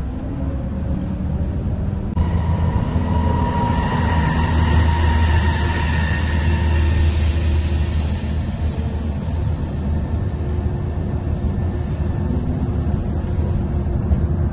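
Moving city bus heard from inside: a steady low engine and road rumble. About two seconds in, a high whine comes in over the rumble and fades away around midway.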